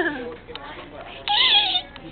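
A young person's short, loud, high-pitched vocal cry, about half a second long, starting just over a second in; its pitch rises slightly, holds and falls away, much like a mock meow or squeal. A brief bit of talk comes just before it.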